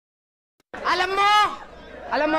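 A single loud, drawn-out, wavering cry starting a little before one second in and lasting under a second, with no sound before it.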